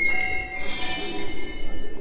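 Metal temple bells ringing on and fading after being struck, with a softer ring of several high tones about half a second in.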